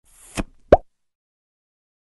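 Logo sound effect closing an intro jingle: a short click, then a single sharp, pitched plop with a slight downward slide, less than a second in.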